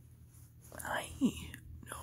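A person's breathy, whispered vocal sound, about a second long, gliding down in pitch about halfway in, after a quiet stretch of room tone.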